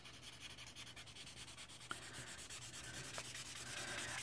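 Felt nib of a L'emouchet alcohol marker rubbing across coloring-book paper in quick, faint back-and-forth strokes, with two small ticks about two and three seconds in.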